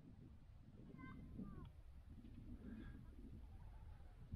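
Near silence: a faint low wind rumble on the microphone, with a couple of faint, brief animal-like calls about a second in.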